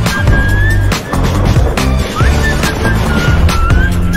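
Film-trailer soundtrack: loud dramatic music with deep bass notes and a hard percussion hit about once a second, with fighter-jet engine noise mixed in.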